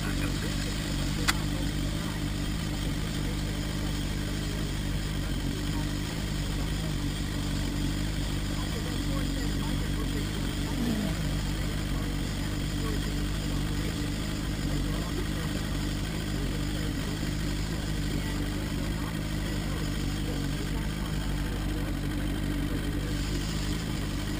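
Small outboard motor running steadily at low trolling speed behind the boat, a constant low hum with a wash of water and wind noise. One sharp click about a second in.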